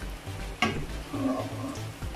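Sliced garlic and green chilies sizzling in hot oil in a pan as a spatula stirs and scoops them, with a sharp clack of the spatula about half a second in.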